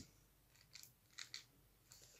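Faint clicks of TV remote-control buttons being pressed while digits are entered, a few short ticks about a second in, otherwise near silence.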